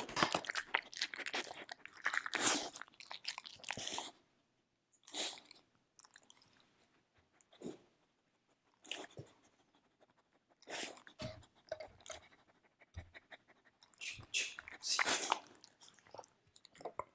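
A Samoyed crunching dry kibble from a plastic slow-feeder bowl, close to the microphone: a dense run of crunches for about the first four seconds, then scattered bouts of chewing and mouth sounds with quiet pauses between.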